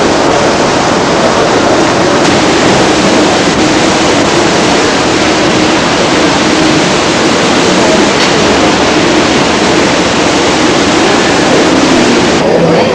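Loud, steady, hiss-like ambience of a busy airport terminal hall, with a faint murmur of voices underneath.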